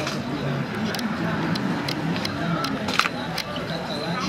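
Camera shutters clicking over and over, about nine sharp clicks with the loudest about three seconds in, over people's voices talking.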